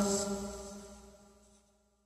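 The last piano chord of a song rings on and fades away, dying out to silence about a second and a half in.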